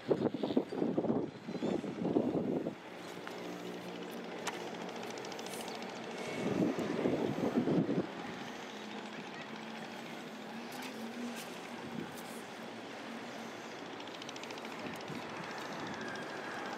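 A steady, distant engine drone with faint low tones, and louder uneven rumbling in the first few seconds and again about halfway through.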